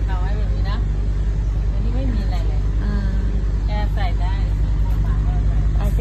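A steady low drone of an engine running nearby, even in level throughout, with quiet talking over it.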